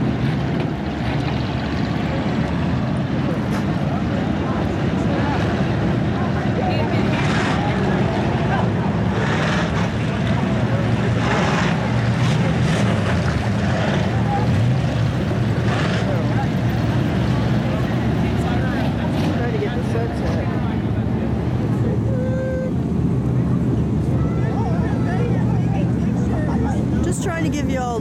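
Hobby stock race car engines running on a dirt oval, a steady low rumble with a few brief swells as cars pass, heard from the grandstand.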